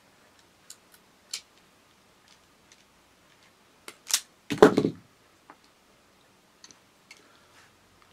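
Automatic self-adjusting wire stripper: a few light clicks as it is set on the wire, then a sharp click about four seconds in and a louder snap as the handles are squeezed and the jaws cut and pull the insulation off an inner core of twin and earth cable. A few faint clicks follow near the end.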